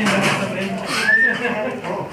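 Indistinct talking, with one short high squeal that rises and falls about a second in.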